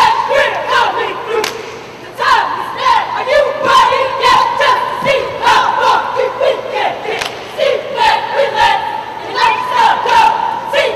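A cheerleading squad shouting a chant together, broken by sharp hits in time with it, over arena crowd noise. The shouting dips briefly about two seconds in, then comes back loud.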